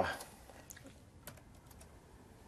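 Laptop keyboard being typed on: a handful of faint, irregularly spaced keystrokes.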